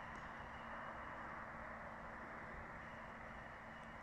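Faint, steady outdoor background noise: an even hiss with a faint low hum and nothing standing out.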